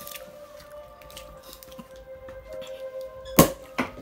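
Background music of steady held tones, then near the end a single sharp pop as the Lambrusco bottle is opened.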